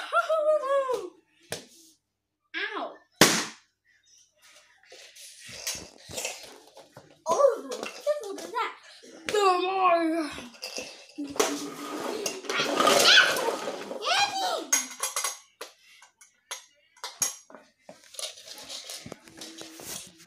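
A child vocalizing in play without clear words, with gliding pitch, and a louder stretch of shouting or yelling about halfway through. Short knocks of toys on a wooden floor are scattered among the voice sounds.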